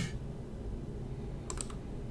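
A few quick clicks from a computer keyboard, a second and a half in, over a faint steady low hum of room tone.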